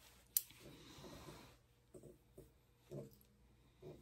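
Quiet grooming sounds: a single sharp click of Ashley Craig Art Deco thinning scissors closing shortly after the start, then a soft rustle through a springer spaniel's coat and a few faint short sounds.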